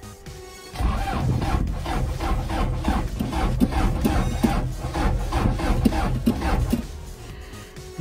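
Starter cranking the Cummins turbo diesel engine swapped into a 1997 Jeep Wrangler TJ: an even, rhythmic chugging that lasts about six seconds and stops near the end without the engine catching. The engine fails to start on this attempt.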